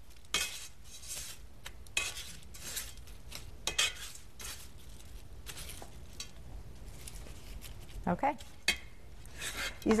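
Metal tongs clinking on a dish while chicken strips are pressed into crushed potato chips: irregular crunchy rustles and clinks, one or two a second.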